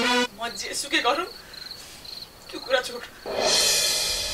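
Crickets chirping in a pulsing high trill, with two short bits of murmured voice. A held music chord cuts off just as it begins, and a loud rushing hiss swells up about three seconds in.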